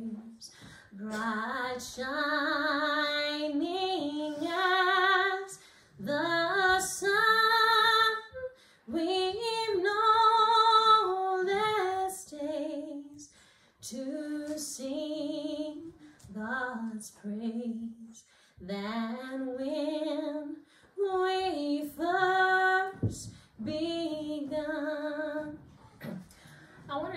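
A woman singing a solo hymn unaccompanied, in phrases of a few seconds with brief pauses between them. Her voice has a clear vibrato on the held notes.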